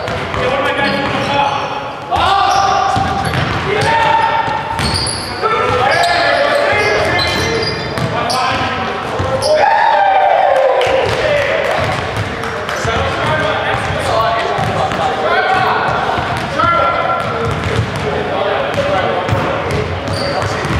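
Indoor basketball game: a ball bouncing on the gym floor, with players' voices calling out, echoing in a large hall.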